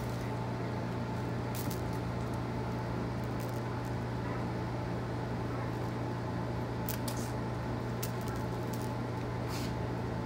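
Steady low machine hum, with a few faint short clicks scattered through it.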